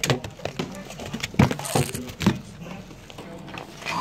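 A few knocks and thumps of a stiff-paged children's book being handled and flapped, with the loudest knocks about a second and a half in and again a little past two seconds.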